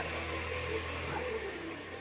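Steady low background hum in a pause between words.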